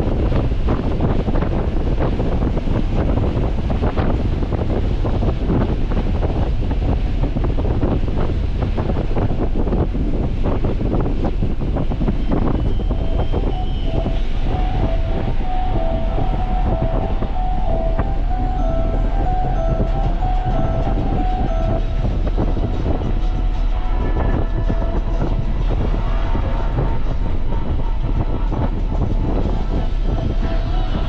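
Nissan 300ZX on the move: its V6 engine and tyre and road noise as a loud, steady rumble with a dense crackle from the road surface.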